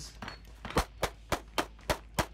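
Shadow Systems DR920 9mm pistol fired in a quick string: about five shots roughly a third of a second apart, starting just under a second in.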